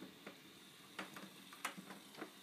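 A few faint, sharp clicks and taps over quiet room tone: one about a second in and two more near the end. This is handling noise from the card and camera being held and moved.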